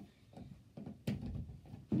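Handling and movement noise as a person shifts about on a carpeted floor, with one sharp click about a second in and a dull thud near the end.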